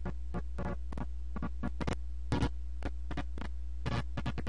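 Glitchy electronic noise track playing from DJ-software decks: a steady low hum under irregular short crackling bursts, the loudest cluster about halfway through.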